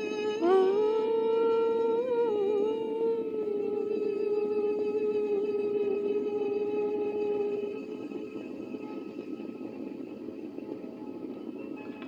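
A single long held musical note, wavering briefly about two seconds in, then steady until it fades out about eight seconds in, leaving a low steady hiss.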